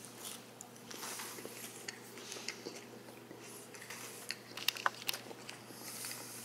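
A person chewing a bite of battered fried fish: faint mouth sounds with scattered small crunches and clicks, a few sharper ones about two-thirds of the way through.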